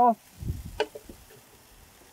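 A metal spatula clicks once against a gas grill's wire warming rack, just under a second in, after a brief low rumble; a faint steady sizzle from the grill carries on underneath.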